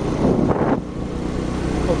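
Motorcycle engine running steadily at road speed, heard from the rider's seat with wind noise on the microphone and a brief rush of noise about half a second in.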